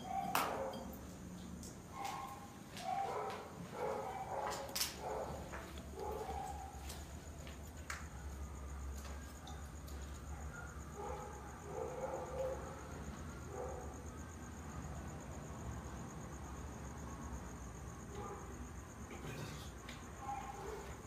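Faint dog barking, with a run of short barks in the first several seconds and another run about halfway through, over a low steady hum. A few sharp clicks or knocks come in the first seconds.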